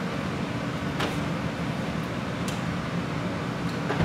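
Steady mechanical fan hum with a low drone running underneath, broken by a couple of faint clicks about one and two and a half seconds in.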